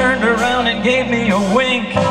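Live rock band playing an instrumental break: bass guitar and drums under a lead melody line that bends and wavers in pitch.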